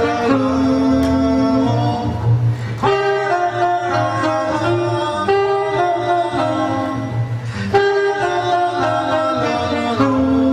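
Alto saxophone and plucked double bass playing jazz together, the sax in held-note phrases over a walking bass line.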